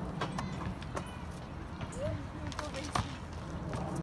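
Outdoor playground sound: scattered sharp knocks and clicks over a steady low rumble, with a brief faint voice about two seconds in.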